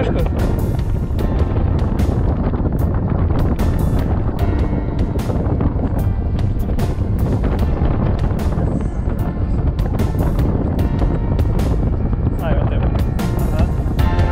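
Airflow rushing over the camera microphone in paraglider flight, a steady low rumble with frequent short clicks, with background music under it.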